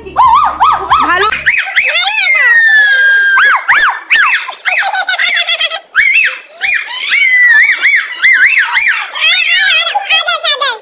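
Girls' very high-pitched squealing voices, a quick run of rising-and-falling shrieks with one long falling squeal about two seconds in. Background music with a beat cuts out about one and a half seconds in.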